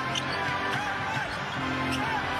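A basketball dribbled repeatedly on a hardwood court, over arena music with steady low sustained notes.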